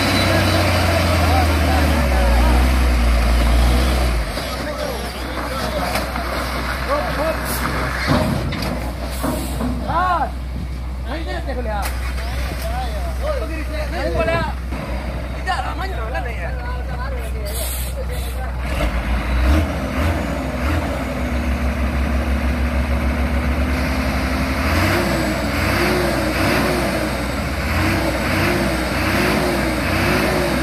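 Hino 500 dump truck's heavy diesel engine running with a deep, steady rumble, loudest in the first few seconds, with the pitch rising and falling at times toward the end, while men shout over it.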